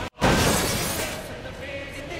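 A sudden loud crash like shattering glass, cutting in right after a split-second dropout and fading over about a second, laid over background music.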